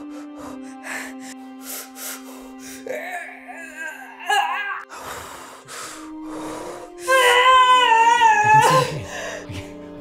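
A woman in labour panting in short, quick breaths over soft background music, with a brief rising cry about four seconds in. About seven seconds in she lets out a loud, high-pitched wail that lasts around two seconds as she pushes.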